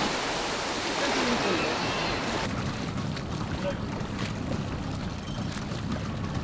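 Surf and wind noise on open sea, with faint voices. About two and a half seconds in it changes suddenly to the steady low running of a small boat's motor with water washing against the hull.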